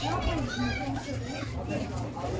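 Children's voices talking and calling out close by, high-pitched and lively, over a steady low hum.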